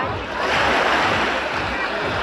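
Small sea waves washing onto a sand-and-pebble shore, swelling about half a second in, with chatter of people around.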